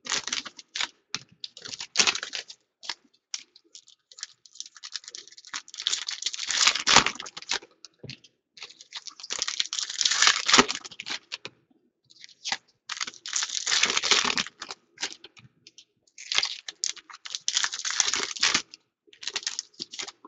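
Foil trading-card pack wrappers crinkling and tearing as packs are opened and the cards handled, in bursts of a second or two with short pauses between.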